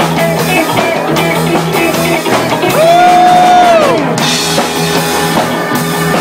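Live rock band playing with drum kit and guitar. About three seconds in, a long held note slides up, holds for about a second, then falls away.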